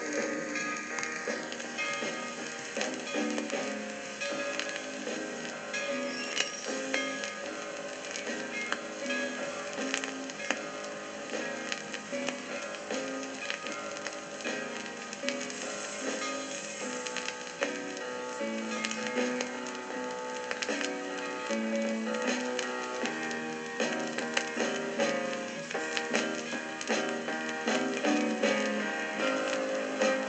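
Instrumental passage of a pop ballad demo played from an acetate disc on a turntable, with frequent surface clicks and crackle from the disc.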